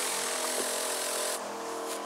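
Motorized garden sprayer running steadily, with a hiss of spray from the nozzle that starts right at the beginning and changes about a second and a half in.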